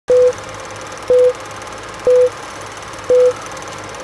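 Film-leader countdown sound effect: four short, loud beeps exactly a second apart, one for each number, over a steady hiss and low hum like old film running.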